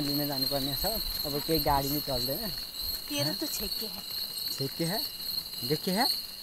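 Steady high-pitched chorus of night crickets, with young boys' voices talking and laughing over it. The voices are the loudest sound.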